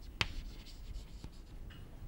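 Chalk writing on a blackboard: faint scratching strokes, with a sharp tap of the chalk against the board just after the start and a lighter one about a second later.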